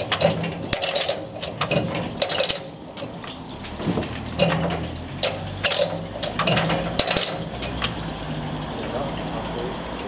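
Irregular metallic clicks and clinks from the mechanism of a Fuller 33 kV on-load tap changer as it is hand-cranked, moving the contact carriages along their helical drive shafts. The clicking thins out after about seven seconds, leaving a low hum underneath.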